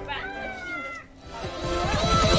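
A single drawn-out meow-like cry lasting about a second, then electronic music with falling bass sweeps starting up in the second half.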